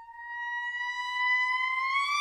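A single high clarinet note, held and growing louder as it slides slowly upward in pitch.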